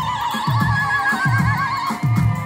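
Live band music: one long high note with a fast, wide vibrato, held over a steady drum beat and ending just before the close.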